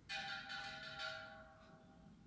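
A faint bell-like chime of steady ringing tones sounds just after the start, swells three times and fades out within about a second and a half.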